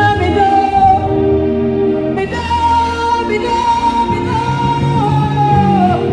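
A gospel song: one voice sings over sustained instrumental backing. In the second half the voice holds one long high note, which slides down just before the end.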